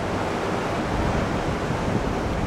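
Steady, even rush of rough sea surf and wind.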